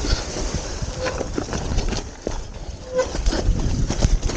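Graziella folding bike rattling as it rides down a snow field, its tyres scraping and crunching through the snow, with two short squeaks, one about a second in and one near three seconds.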